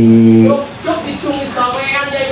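A man's voice: a drawn-out, held filler sound, then a few unclear spoken syllables.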